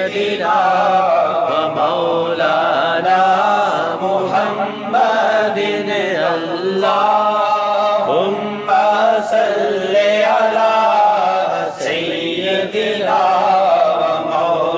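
A man's voice reciting a naat unaccompanied, in long, wavering melodic lines with brief breaks between phrases.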